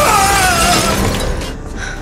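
Window glass shattering as a body crashes through it, a loud noisy crash that dies away about one and a half seconds in, over dramatic score music.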